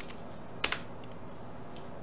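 A single computer keyboard keystroke about two-thirds of a second in, the Enter key sending a typed command, over faint steady room noise.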